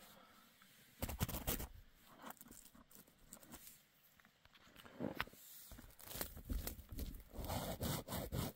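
Faint rustling and handling noise of nylon tent fabric being brushed and the camera being moved, in irregular bursts: a cluster about a second in, another around five seconds, and a denser run of rustling near the end.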